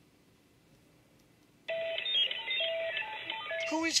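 After near silence, an electronic sound effect starts abruptly about two seconds in: a quick run of short beeps at stepping pitches, like a telephone being dialled, sounding thin as if through a phone line. A voice begins right at the end.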